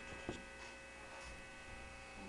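Faint steady electrical hum with a light knock shortly after the start.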